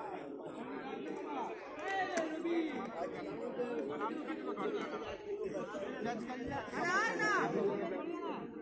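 Indistinct chatter of several voices from players and onlookers, with a couple of louder calls about two seconds in and near the end.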